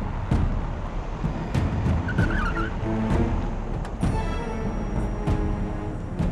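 A car driving up and braking with a short tyre skid, under dramatic background music with repeated percussive hits.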